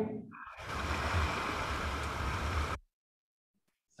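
Rushing whitewater of Lava Falls rapid on the Colorado River, heard close from a tule reed raft riding through it, with a steady low rumble. It cuts off suddenly about three quarters of the way through, leaving silence.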